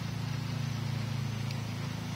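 A steady low mechanical hum, like a motor running nearby.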